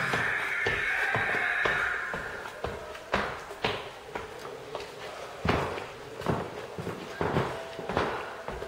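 Footsteps on a hard floor: a handful of separate, unevenly spaced steps from about three seconds in, after a fading rustling hiss in the first two seconds.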